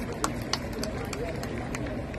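Indistinct murmur of a large crowd of people, with a few short sharp clicks scattered through it.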